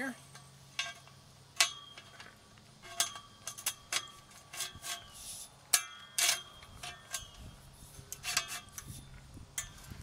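Galvanized steel pipe rail clinking and knocking against the steel posts and their clamp fittings as it is worked down into place: a string of irregular sharp metal knocks, each ringing briefly.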